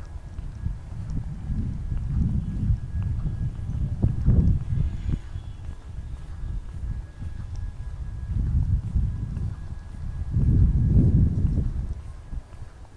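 Footsteps and handling noise from a phone carried on a walk, under low rumbling gusts of wind on its microphone that swell and fade, loudest about four seconds in and again near the end.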